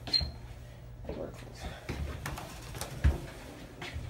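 Low steady hum inside a hydraulic elevator cab, with a short high beep just after the start, scattered clicks, and a sharp knock about three seconds in.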